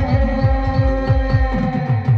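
Live band music: sustained melody notes over a fast, steady beat of deep drum hits that drop in pitch, about four a second.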